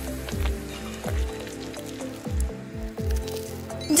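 Background music with a beat of repeated falling bass notes, over a soft squish of a knife and fork cutting into food.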